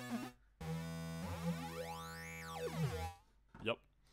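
A held synthesizer note played through Bitwig Studio's Comb filter device, its resonant peak swept up high and back down over the note. One note ends just after the start and after a brief gap a second note holds for about two and a half seconds before cutting off.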